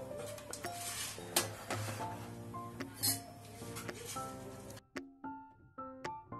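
Background music over metallic clinks of a steel pressure cooker lid being fitted and closed, with the sharpest click about three seconds in.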